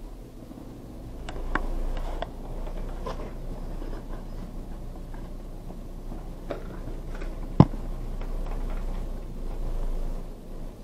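Passenger lift car travelling between floors: a low steady rumble that comes up about a second in, with scattered light clicks and one sharp click about seven and a half seconds in.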